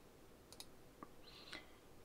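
Near silence with a few faint clicks about half a second apart, from a computer mouse selecting an edge in CAD software.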